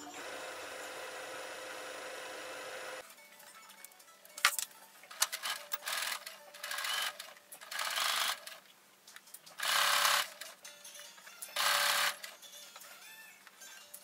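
Brother Innov-is 35 computerized sewing machine: its motor runs steadily for about three seconds and stops abruptly, then it stitches a hem in several short bursts of under a second each, with pauses between them.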